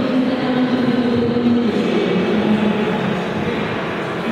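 Steady, echoing background din of a large sports hall, with a sustained humming tone that drops in pitch about two seconds in.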